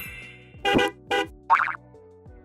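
Short music sting for an animated channel logo: three short pitched hits about half a second apart, the last sliding up in pitch, over a low steady bed.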